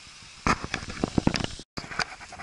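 A rapid, irregular string of clicks and knocks, typical of handling noise rubbing on a handheld camera's microphone. It breaks off with a moment of dead silence about three-quarters of the way in.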